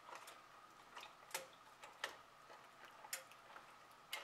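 Faint, irregular light clicks and taps of a utensil against a metal pot holding water, with near silence between them.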